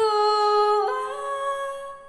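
A woman singing solo into a microphone: one long held note that steps up in pitch about a second in, then fades out near the end.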